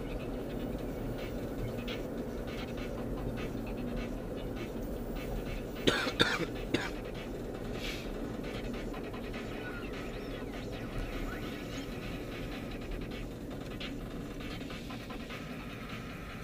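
Steady low rumble of a car's engine and tyres heard from inside the cabin while driving. About six seconds in, a person coughs three times in quick succession.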